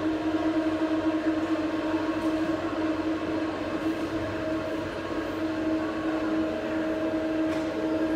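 A steady machine hum with a constant mid-pitched tone and a second tone an octave above it, over an even mechanical noise.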